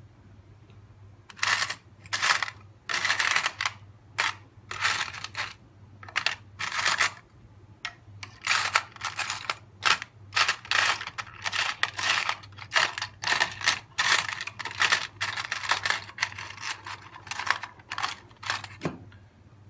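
Steel Allen wrenches and small hand tools clinking and clattering in a plastic tool tray as a hand rummages through them, in irregular bursts of clinks starting about a second and a half in.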